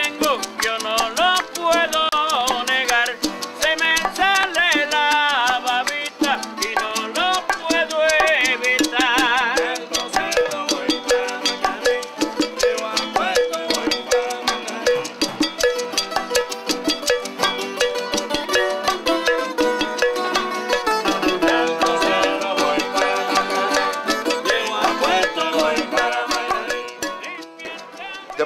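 A small Cuban son/salsa group playing live, with bongos and acoustic guitar. A wavering sung voice is clearest in the first ten seconds or so, and the music thins out and stops shortly before the end.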